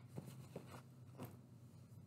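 Near silence: room tone with a steady low hum and a few faint, short ticks.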